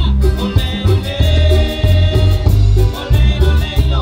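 Live cumbia band playing an instrumental passage: electric bass, drums and keyboard over a steady dance beat.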